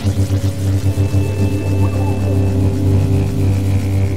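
Deep droning soundtrack music: a low drone rich in overtones, throbbing quickly at first and then settling into a steady hum, with a faint thin high tone floating above it for a moment.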